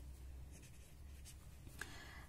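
Faint scratching of a pen writing on a sheet of paper.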